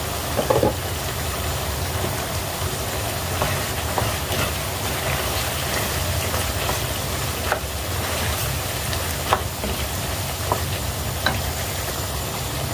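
Food sizzling in a pan, with scattered light clicks of a cooking utensil over a steady low hum.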